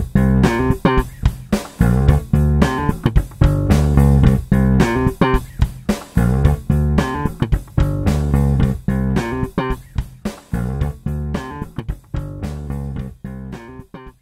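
Instrumental background music from a royalty-free loop, led by guitar over bass guitar with a steady rhythmic beat, fading out near the end.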